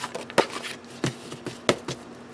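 Sheets of paper being handled and set down on a tabletop: six or seven short, sharp light taps with a little rustling, the loudest a little under half a second in.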